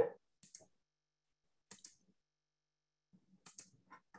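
Short, sharp clicks, about seven in four seconds, some coming in quick pairs; the first is the loudest.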